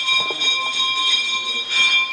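A metal temple bell ringing steadily, several high tones sounding at once and swelling briefly near the end.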